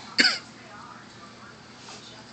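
A toddler gives one short, abrupt cough-like burst with a falling pitch, about a fifth of a second in.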